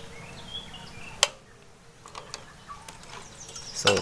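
A single sharp click of an inline cable switch about a second in, after which a faint steady hum stops and the background drops quieter. Faint high chirps sound before the click.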